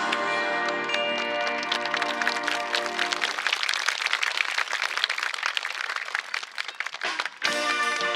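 Marching band of brass (trumpets, trombones, sousaphones) and woodwinds holding a loud sustained chord that cuts off after about three and a half seconds. Applause follows for a few seconds. The band starts playing again near the end.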